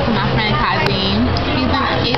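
Women talking in casual conversation, over a steady low hum.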